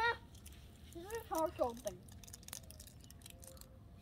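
Brief speech: a short voiced "huh" about a second in, after a quick vocal sound at the very start. The rest is quiet outdoor background with a few faint clicks.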